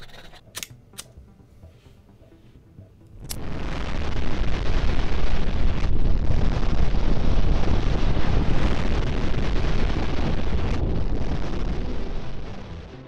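A few short hacksaw strokes on a tin can, then, about three seconds in, a homemade tin-can jet burner lights and burns with a loud, steady rushing noise, dipping briefly twice.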